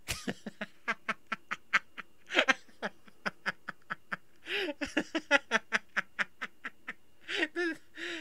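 A man laughing hard: a long run of short, breathy wheezing bursts, about four a second, broken by a couple of louder voiced laughs about halfway through and near the end.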